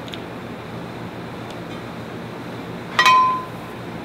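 A single sharp clink from a cut-glass trophy, about three seconds in, with a short bright ring that dies away within half a second.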